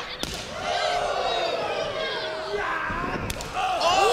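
A thump just after the start, then a long, slightly falling held shout, then the smack of a big boot kick landing on a wrestler near the end.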